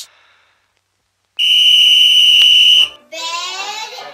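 A whistle blown once: a loud, steady shrill note lasting about a second and a half, starting after a short silence. It is followed near the end by a high, wavering cartoon duckling voice.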